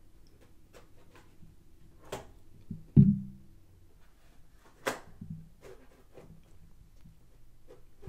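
Tablets in fabric-covered kickstand cases and their detachable keyboards handled on a wooden tabletop: a few light clicks and taps, with one heavier thump about three seconds in as a tablet is set down, and another sharp click about two seconds later.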